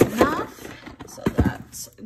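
Cardboard medication boxes being handled and set down into a storage basket: a short scrape, then a couple of sharp knocks about halfway through, with a brief spoken word at the start.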